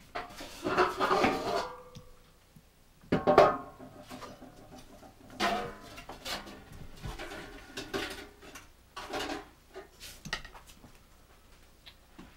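Dishes and metal kitchenware clattering as they are handled at a kitchen counter: a run of irregular knocks and clinks with short ringing, the loudest about three seconds in.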